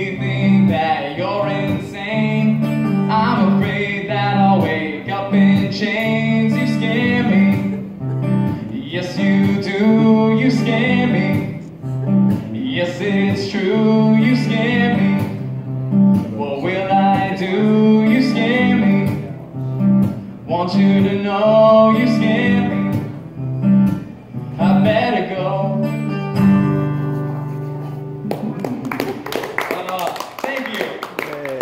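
A man singing to his own acoustic guitar strumming, in a live solo performance. The singing ends about four seconds before the end and the guitar plays on briefly to close the song.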